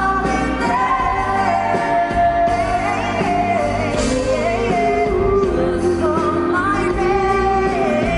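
A woman and a man singing a soul ballad duet live into microphones, with band accompaniment.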